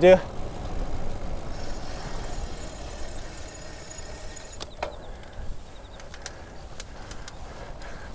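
Road bike rolling along a paved path: steady tyre and wind noise that eases off over the first few seconds, with a few light clicks in the second half.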